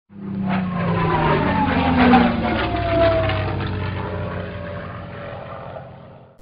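A propeller aircraft's engine passing by, its pitch falling as it goes, then fading away.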